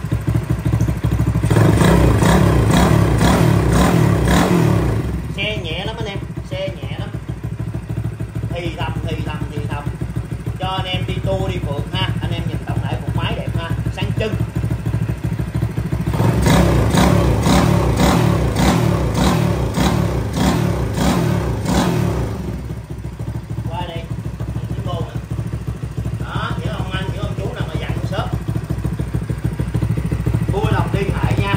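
Honda CD50 motorcycle with a Honda Alpha single-cylinder four-stroke engine running on its stand at a raised idle. It is revved up twice, about a second in for some four seconds and again from about sixteen to twenty-two seconds, and drops back to idle between.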